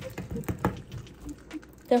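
A metal stirring tool clicking and scraping against the inside of a glass jar as melted soft plastic is stirred, a few irregular light knocks. The stirring is to work air bubbles out of the remelted plastic.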